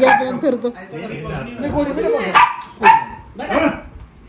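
A dog barking, two loud, short barks a little past halfway through, mixed with people's voices.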